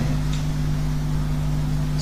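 A pause in speech filled by a steady low hum with an even background hiss.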